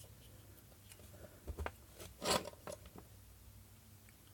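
Faint handling noises: a few short scrapes and clicks as small plastic pump parts and a screwdriver are handled, the loudest a little over two seconds in.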